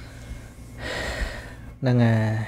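A man draws a quick, audible breath about a second in, then near the end starts a loud, held vowel sound, the start of his next phrase. A faint steady hum lies underneath.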